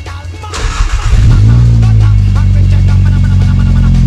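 VW Mk7.5 Golf GTI's turbocharged 2.0-litre four-cylinder starting up through a Milltek cat-back exhaust: a brief rush about half a second in, then the engine catches and settles into a loud, steady idle.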